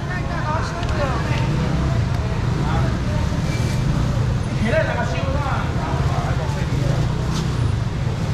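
Short stretches of nearby talking at a busy seafood stall, over a steady low rumble.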